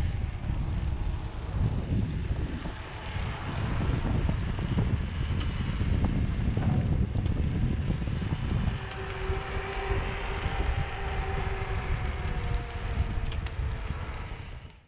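Wind buffeting the microphone of a camera moving alongside a cyclist on tarmac, a loud, rough rumble. A faint steady hum joins in about two-thirds of the way through.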